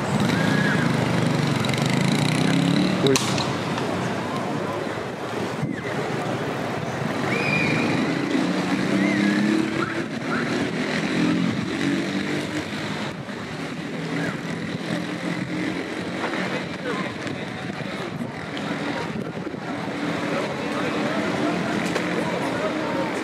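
Busy city street ambience: people talking nearby over steady road traffic, with a short sharp click about three seconds in.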